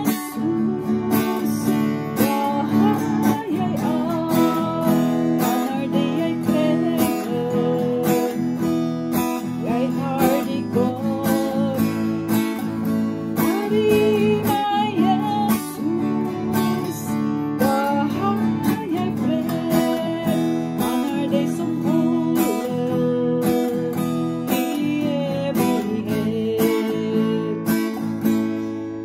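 A woman sings a Norwegian gospel chorus to her own acoustic guitar, strummed in a steady, even rhythm.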